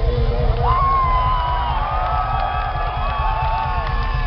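Large rock-concert crowd cheering, with many shrill whoops and screams, as the band's music winds down underneath at the end of a song.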